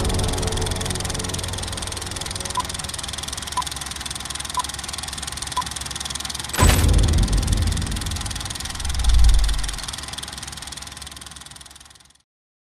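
Old-film countdown sound effect: a film projector's steady running rattle with four short beeps a second apart, then a sharp loud hit about six and a half seconds in and a low boom that fades away.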